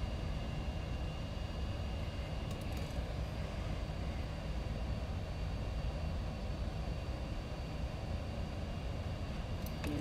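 Hot air gun blowing steadily, a constant rushing hiss with a faint high whine, shrinking heat-shrink tubing over a drone's receiver antenna wire.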